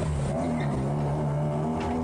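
A car driving past slowly on a cobblestone street, its engine giving a steady low hum, with a short rush of noise near the end as it goes by.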